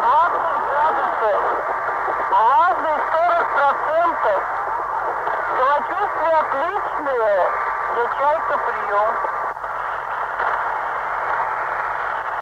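A voice heard as if over a radio: speech squeezed into a thin, tinny band, with a steady low hum beneath it.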